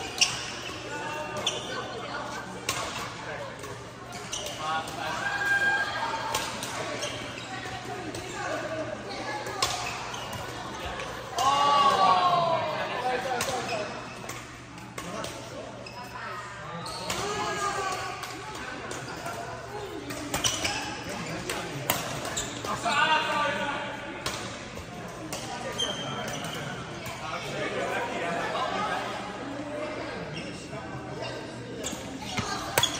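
Badminton hall din: sharp cracks of rackets hitting shuttlecocks and knocks from play across several courts, with voices calling and chatting, all echoing in a large hall. A steady low hum runs underneath.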